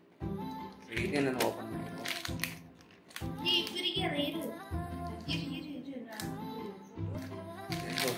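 Background music with a melodic vocal line over a bass that changes notes every half second or so.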